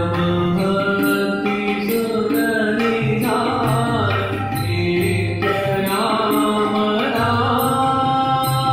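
A Hindu devotional bhajan sung by a man to his own harmonium, with tabla keeping a steady beat.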